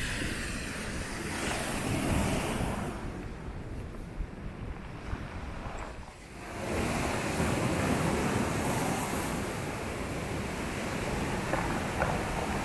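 Sea surf breaking and washing up the beach, a steady rushing noise that swells and eases, drops off briefly about six seconds in, then returns louder.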